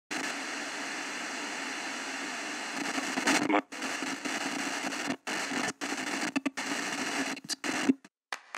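Car radio static hissing while the radio is tuned between stations. A steady hiss runs for about three seconds, then it keeps cutting out in short silent gaps, with snatches of voice in the noise.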